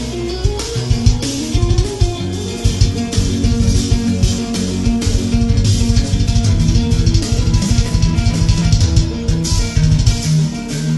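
Tagima electric guitar playing fast lead runs of quickly changing notes over drum kit and bass guitar accompaniment.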